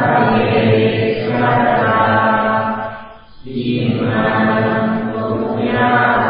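Low-pitched Buddhist chanting in long held phrases, with a short breath pause about three seconds in.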